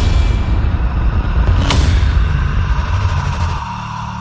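A cinematic logo sting: a deep boom hit with heavy rumbling low end and a sharp crack about one and a half seconds in. It fades out near the end.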